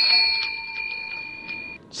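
Bell sound effect: a single struck bell ringing with a clear tone that starts sharply and fades over almost two seconds, with a few faint ticks under it. It is the transition stinger marking the start of the next 'campanazo' segment.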